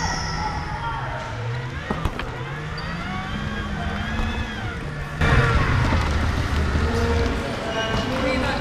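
Electric power wheelchair drive motors whining, their pitch rising and falling in long glides as the chair speeds up, slows and turns, with a sharp knock about two seconds in. From about five seconds the sound gets louder, with voices in the background.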